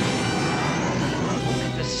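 Film sound effect of X-wing starfighters flying past, a dense steady engine noise with a faint rising whine, under the orchestral score. A radio-filtered pilot's voice begins near the end.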